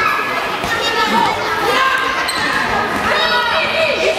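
A handball bouncing on a sports-hall floor amid children's shouts and voices, echoing in the large hall.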